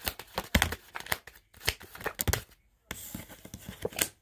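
Tarot cards being shuffled and handled: a run of quick card clicks and flicks for the first couple of seconds, then a brief pause and a soft rustle near the end as a card is drawn.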